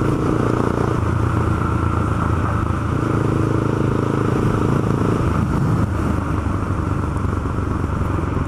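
Honda CB300 motorcycle's single-cylinder engine running steadily under way at cruising speed, with road and wind noise.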